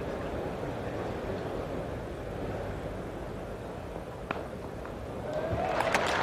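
Steady background murmur of a cricket-ground crowd. A single sharp crack of bat on ball comes about four seconds in, and the crowd noise starts to swell into applause near the end.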